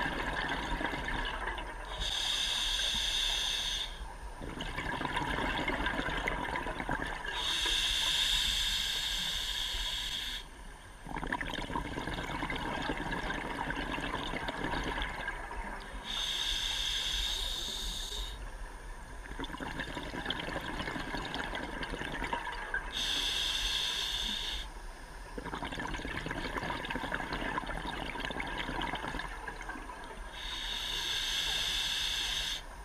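A diver breathing through a scuba regulator underwater. A breath cycle of a hissing burst and bubbling repeats about every seven seconds.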